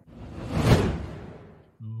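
A whoosh transition sound effect: a rushing noise that swells to a peak under a second in and fades away over the next second. A man's voice starts right at the end.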